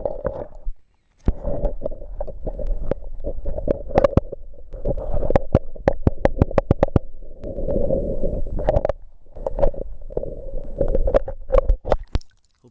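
Muffled underwater sound from a waterproof camera held submerged in a lake: a steady gurgling rumble of water moving against the camera, broken by many sharp clicks and knocks, with a brief dropout about a second in.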